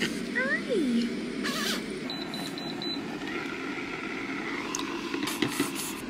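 Electric baby-bottle warmer beeping: a quick run of about five short, high beeps about two seconds in.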